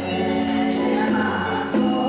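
Voices chanting a temple liturgy in sustained, even tones through a microphone and PA, with a ritual bell struck now and then.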